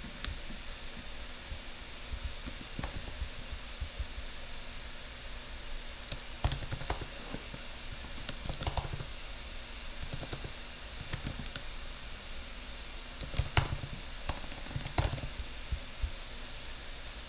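Typing on a computer keyboard: scattered key clicks in short runs over a steady hiss, with louder clusters about six and a half, thirteen and a half and fifteen seconds in.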